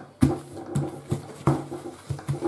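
Paper towel crinkling and patting against the table as it is pressed onto rinsed salt cod to dry it, several sharp pats in a row.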